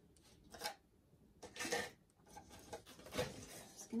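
Paint cups and supplies being handled on a work table: three short knocks and scrapes, about a second apart.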